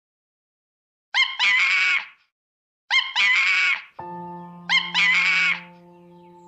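An animal call repeated three times, identical each time and about two seconds apart: a short rising note, then a longer, loud, pitched cry. Music with held notes starts about four seconds in, under the third call.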